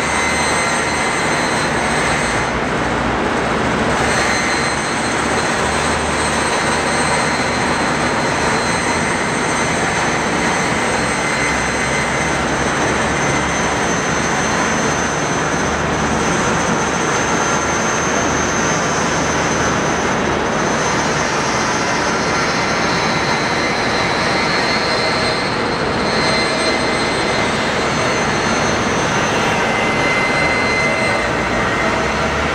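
Forrest Model 236 vertical-blade, traveling-table bandsaw running, its half-inch, 3-teeth-per-inch blade cutting through a plywood cylindrical shell. The noise is loud and steady, with a few faint high tones held over it.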